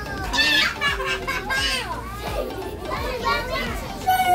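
Several children's voices talking and calling out over one another, high-pitched and overlapping, with no single voice standing out.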